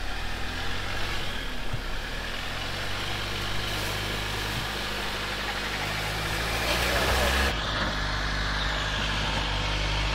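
Stock four-door Jeep Wrangler's engine running steadily at low revs as it crawls slowly over bare rock, a low hum throughout. The sound changes abruptly about three-quarters of the way through.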